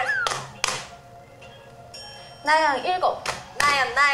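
Variety-show soundtrack: a few sharp hand claps in the first second with a falling whistle-like sound effect, then voices and upbeat background music from a little past halfway.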